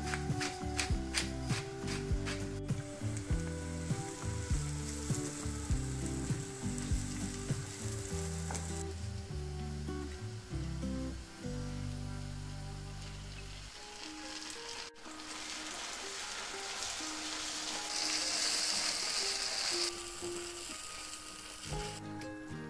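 Sliced mushrooms and onion frying in butter in a nonstick pan, a steady sizzle that grows brighter and louder in the second half, loudest shortly before the end. Background music plays under it.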